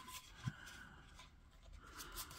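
Faint plastic handling sounds from a white Wi-Fi range extender turned in the hands as its fold-out antennas are raised, with one soft thump about a quarter of the way in.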